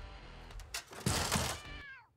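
Handsaw rasping through a wooden door panel, then a short squeal that falls in pitch near the end.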